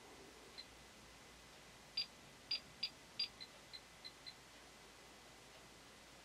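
CAJOE Geiger counter beeping once per detected count: short, high beeps at irregular intervals, a faint one early and about eight between two and four and a half seconds in. The tube sits beside a lit UVC lamp, counting at about 65 counts per minute, a little above background.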